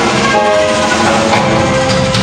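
Live jazz quartet playing: flute holding long notes over electric bass, stage piano and drum kit.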